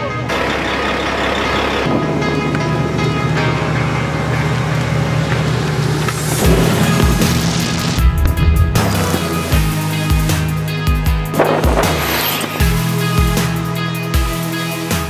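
Background music: sustained tones at first, then a driving beat with heavy bass drum hits from about six seconds in.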